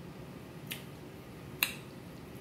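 Quiet eating sounds as spicy noodles are eaten with chopsticks: two short clicks, the second about a second after the first and sharper.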